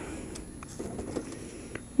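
Quiet background with the motorcycle's engine silent, stalled at a stop. The rider takes the stall for a sign of tight exhaust valves losing compression. Only faint ticks and a soft low sound about a second in.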